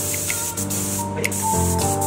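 Compressed-air paint spray gun hissing as it sprays, cutting out briefly about halfway through, over background music.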